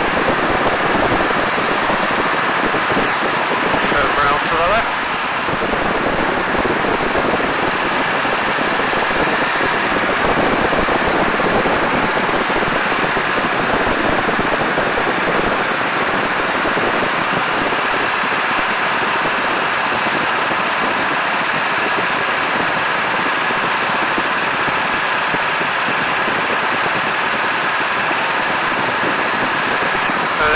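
Loud, steady rush of wind buffeting the microphone, mixed with the biplane's engine running in flight, with a brief dip in level about five seconds in.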